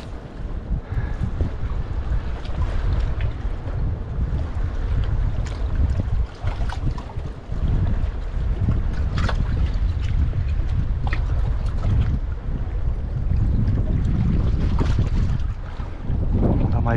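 Gusting wind buffeting the microphone, a heavy, uneven rumble, over small waves lapping against rocks.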